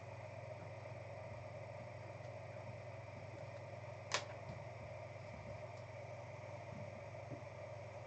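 Quiet, steady low room hum, broken by one sharp click about four seconds in and a couple of faint ticks near the end.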